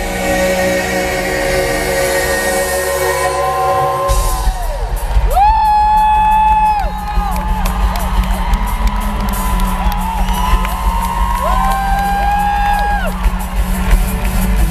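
Live pop band music through a concert PA, heard from the audience: long held notes that slide up into and down out of each pitch, over a low bass that gets much heavier about four seconds in.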